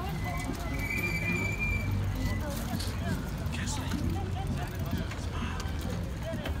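Low rumble of wind and tyres on a group bicycle ride, with a high, steady squeal through the first two seconds.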